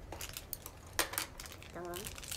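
A few sharp clicks and crinkles of a small foil seasoning sachet being picked up and handled at a table, the loudest pair about a second in. A woman says a word near the end.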